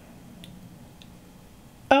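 Quiet room tone with two faint, short clicks as a small cured UV resin piece is turned over in the hands; a voice says "oh" right at the end.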